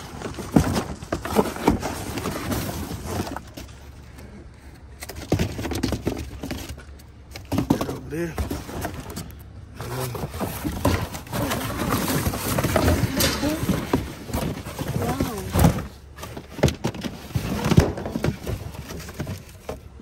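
Cardboard boxes being pulled about and shifted, with rustling, scraping and knocks, while people talk in low voices over it.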